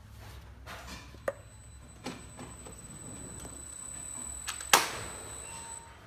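Handling noise as hands reach in to the depalletizer's photo-eye sensor on its steel frame to lower it: a few light clicks, then one sharp loud clack near the end. A faint, thin, high steady whine runs through the middle.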